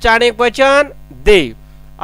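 A voice speaking in short phrases, over a steady low electrical hum.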